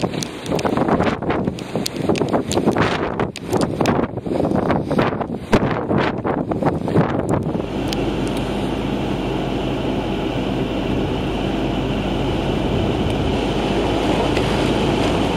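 Gusting blizzard wind buffeting the microphone, rising and falling in sharp gusts. About seven and a half seconds in, it gives way to the steady rumble of a car driving on a snow-covered road, heard from inside the cabin.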